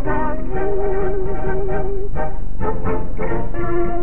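Dance-band music accompanying a dance number, with a melody of long held notes over the band. The sound is dull and muffled, with no high end, as on an old film soundtrack.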